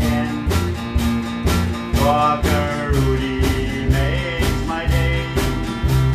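A small band playing an upbeat country song: acoustic guitar, electric bass and a drum kit keeping a steady beat.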